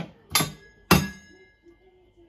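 Small metal toy frying pan clanking on a toy kitchen hob: three sharp metallic knocks, the last the loudest and left ringing for about a second.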